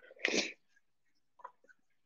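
A single short, loud burst of noise lasting about a third of a second, followed by a few faint clicks.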